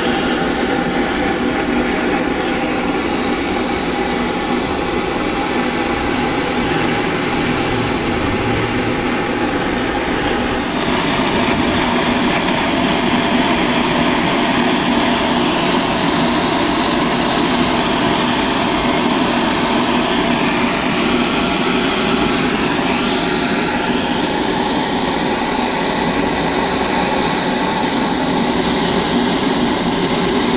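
Handheld propane-butane torch burning steadily, its flame making a continuous rushing hiss close by as it heats the thick section of a die-cast zinc part before brazing. The sound shifts slightly about ten seconds in.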